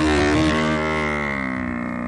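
Recorded buffalo (American bison) bellow played from Google Search's animal sounds feature: one long low call, its pitch sinking slowly as it fades.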